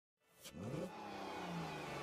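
Car engine revving up quickly with a short whoosh about half a second in, then running on at a steady pitch.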